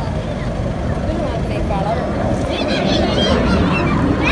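Steady low rumble of jet aircraft flying an air-show display, with a crowd of spectators talking and calling out over it from about halfway through.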